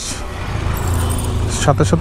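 A bunch of metal keys jangling in the hands, over a steady low rumble.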